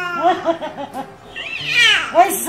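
A baby squealing and cooing in short, high, rising-and-falling calls, with a loud high squeal near the end.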